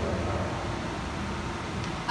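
Steady room noise in a hall: a low hum under an even hiss.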